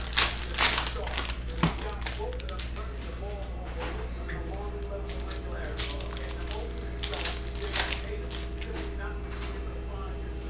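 Foil trading-card pack wrapper being torn open and crinkled in the hands, with cards slid out: a string of short crackling rustles, loudest in the first second, over a steady low hum.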